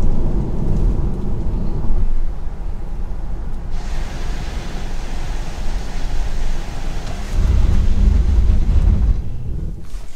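Cabin sound of a Tesla Model 3 Performance at about 50 mph on wet tarmac: a low road and tyre rumble, joined about four seconds in by the hiss of water spray off the tyres. From about seven and a half to nine seconds the low rumble swells, as the car brakes hard on the wet surface.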